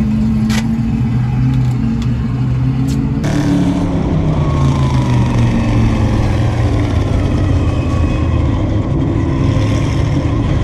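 Engines running steadily in the background with a sharp click or two; a little over three seconds in the sound cuts abruptly to a dirt-track modified race car's engine heard from inside the cockpit, running on track with its pitch easing slowly down.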